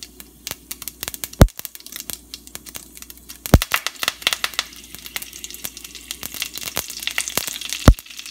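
Mustard seeds popping and spluttering in hot oil in a stainless steel pot, with fresh curry leaves crackling as they fry. Irregular sharp pops, with three much louder cracks at about a second and a half, at three and a half seconds and near the end, thickening into a denser sizzle in the second half.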